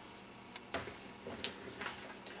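A few faint, sharp clicks and taps, about four of them scattered over quiet room tone.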